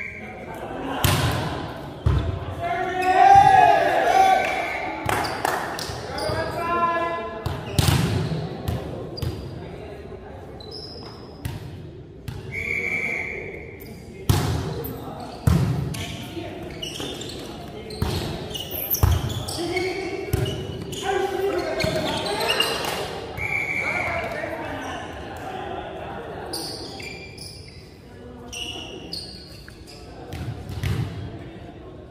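Volleyball being hit and bouncing on a hardwood gym court during a rally, sharp slaps and thuds echoing in the large hall, with players' shouted calls and a few short high shoe squeaks on the floor.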